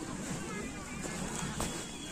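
Faint voices of people talking at a distance over a steady low rumble.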